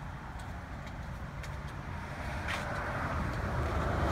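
Road traffic: a car's tyre and engine noise, growing louder in the second half.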